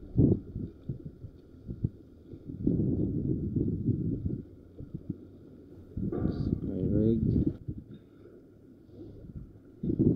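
Handling of a small plastic tackle box as it is opened and a float rig is taken out, heard as rumbly knocks and rustles on a poor camera microphone, with wind rumble. A voice is briefly heard about seven seconds in.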